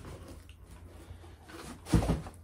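Quiet rustling of cardboard packaging being handled, with one sharp knock near the end.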